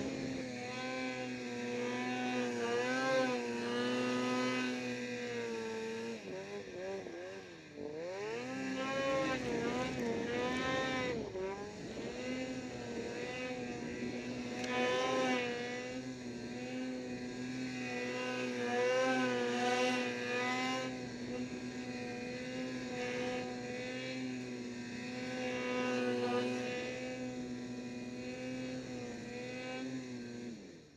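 Snowmobile engine running under throttle with a mostly steady note. Its pitch dips and climbs back about seven to eight seconds in and again around eleven seconds, as the throttle is eased and reapplied.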